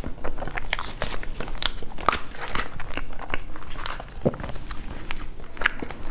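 Close-miked chewing of a soft cream-filled pastry: a run of wet mouth clicks and smacks at an irregular pace, mixed with the crinkle of a paper cupcake liner being handled.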